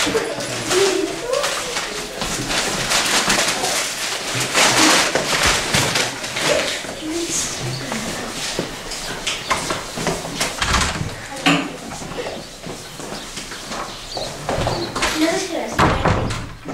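Indistinct chatter of children's voices filling a classroom, with scattered short knocks and clatter throughout.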